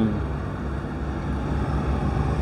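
A steady low rumble of background noise with no distinct events in it.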